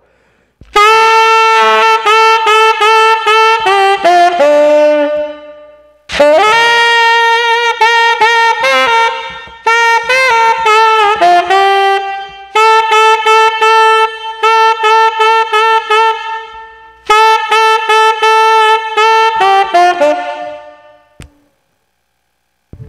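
Tenor saxophone playing several short phrases of rapidly tongued, repeated high notes. Each phrase steps down to lower notes at its end. The phrases demonstrate a quick tongue release for attacking high notes.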